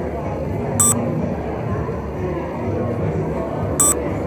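Two short, high electronic beeps about three seconds apart, the focus-confirmation beep of a DSLR camera. They sound over steady crowd chatter and background music.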